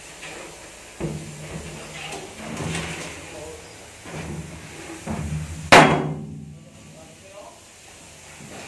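A single loud, sharp bang about five and a half seconds in, ringing on briefly inside the steel shipping container. It follows a few duller, lower knocks.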